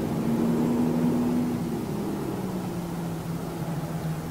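A steady low mechanical hum over an even background rush, with a slightly higher tone in the hum dropping out about one and a half seconds in.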